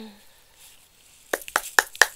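A woman coughing, a few short sharp coughs in quick succession near the end.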